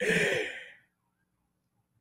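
A person's breathy sigh or exhale as a laugh winds down, fading away within the first second, then silence.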